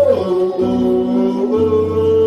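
Worship singing, with long held sung notes moving to new pitches every second or so, over a sustained low instrumental accompaniment.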